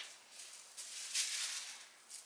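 Soft rustling of cut fabric pieces being picked up and handled, loudest a little past the middle.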